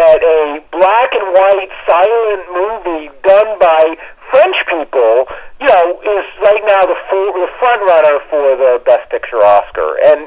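Speech only: one person talking continuously. The voice sounds thin and narrow, as if heard over a telephone line.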